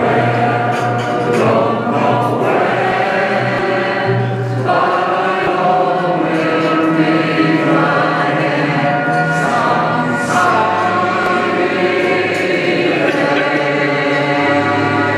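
A choir singing long held chords that change every few seconds.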